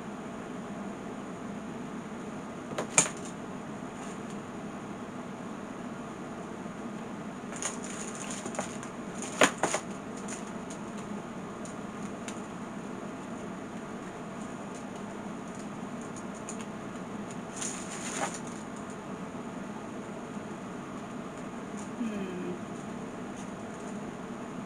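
Steady low room hum with a few sharp clicks and taps, the loudest about three and nine seconds in. The clicks come from hands working a hot glue gun and painted popsicle-stick shingles on a craft table.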